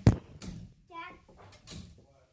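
A sharp thump right at the start, then a child's short vocal sound about a second in, and a softer knock near the end.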